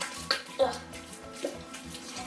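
Wet squishing and squelching of homemade glue slime being kneaded and stretched by hand, with a few sharper squelches, over quiet background music.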